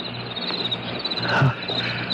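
Crickets chirping in a fine, even trill: a background effect that keeps the outdoor courtyard scene audible between lines. A short louder sound comes about one and a half seconds in.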